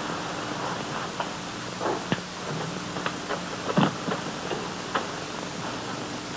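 Steady hiss and faint hum of an old recording, with a few soft clicks and knocks scattered through it.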